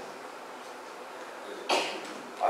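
A single short cough near the end, after a quiet stretch of room tone.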